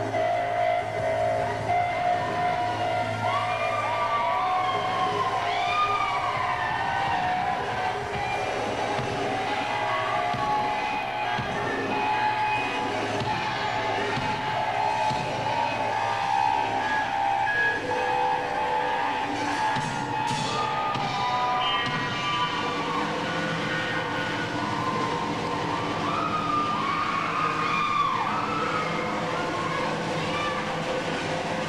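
Live experimental band music: layered sustained drones, with sliding, siren-like pitch glides rising and falling a few seconds in and again near the end.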